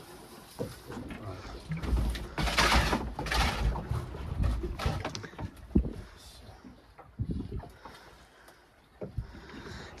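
Wind buffeting the microphone in gusts, heaviest from about two to five seconds in, with a few light knocks.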